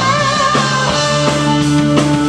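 Live funk-rock band playing: electric guitar, Fender Precision bass, keyboards and drum kit together. A wavering, bending lead note sounds in the first half second, then the parts settle into held notes over the bass.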